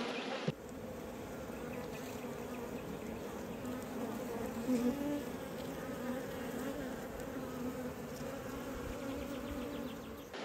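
Many honeybees buzzing from an open hive, a steady hum whose pitch wavers slightly.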